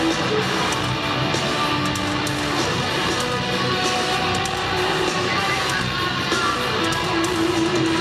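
A heavy metal band playing live, with no vocals: distorted electric guitars hold long notes over drums and cymbals, heard from the arena crowd.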